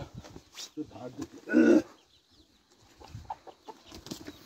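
Chickens clucking, with one short loud call about a second and a half in and faint high chirps after it.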